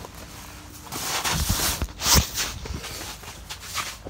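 Rustling and a few knocks from people handling a freshly landed catfish and shifting in heavy winter clothing, starting about a second in and loudest about two seconds in.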